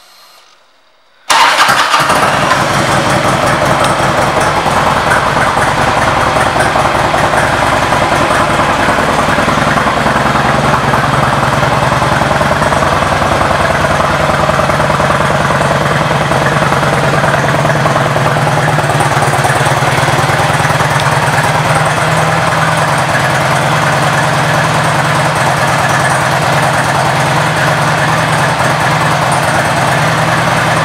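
2003 Harley-Davidson Road King's Twin Cam 88 V-twin with Screaming Eagle exhaust starting up about a second in, then idling steadily.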